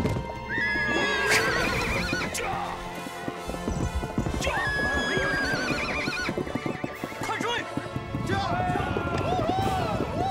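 Several horses neighing and hooves thudding on turf as a band of riders circles close. Long whinnies come about half a second in and about four and a half seconds in, and a wavering one near the end, over steady hoofbeats.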